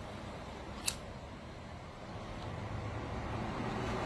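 Low background rumble that grows louder near the end, with one sharp click about a second in.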